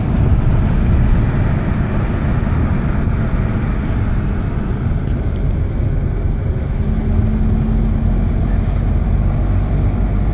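Steady engine and road noise heard inside a moving car's cabin, a low rumble with tyre hiss. A faint steady hum rises out of it about seven seconds in and fades about two seconds later.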